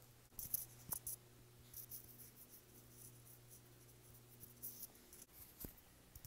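Faint, scattered scratchy crackles of an orange being peeled by hand, the peel scraping and tearing, loudest in the first second. A low steady hum runs underneath.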